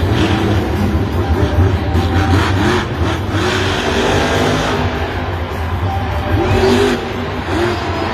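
Grave Digger monster truck's supercharged V8 engine revving repeatedly, its pitch rising and falling several times, with arena music playing underneath.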